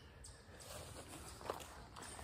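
Faint footsteps and rustling on the forest floor as someone steps and crouches in close, with a soft tap about one and a half seconds in.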